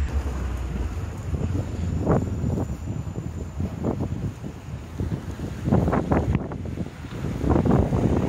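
Wind buffeting a smartphone microphone outdoors: a steady low rumble with a hiss above it, and short irregular bumps and crackles scattered through, clustered about two seconds in and again from about five and a half seconds on.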